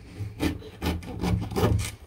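A knife sawing back and forth through the crisp crust of a freshly baked corn-and-wheat-flour soda bread, a rasping scrape on each stroke, about three strokes a second.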